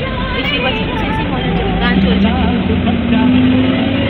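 Passengers' voices over the steady low rumble of a bus running.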